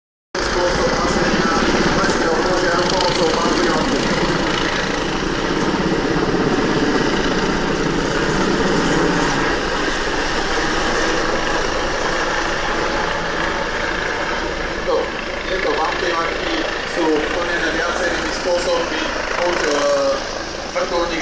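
Mil Mi-17 helicopter flying over, its twin turboshaft engines and main rotor making a loud, steady beating noise through roughly the first half, then fading as crowd voices come through.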